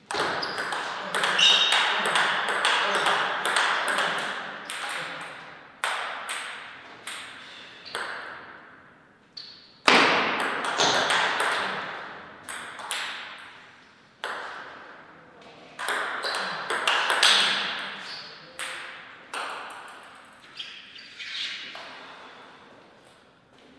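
Table tennis rallies: the celluloid-type plastic ball clicking off rubber-faced paddles and bouncing on the table in quick runs of hits, each click trailing off in a long echo in the hall. Three rallies follow one another, with the loudest hit about ten seconds in.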